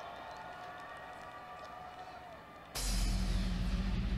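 Live concert audio: a festival crowd cheering under a few held synth tones. Near the end the sound jumps suddenly loud, with a hiss and a heavy, steady deep bass as the performance's intro starts.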